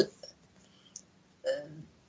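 Speech hesitation: the end of a drawn-out spoken "uh", a faint mouth click about a second in, then a short wordless vocal sound, like a catch in the voice, about one and a half seconds in.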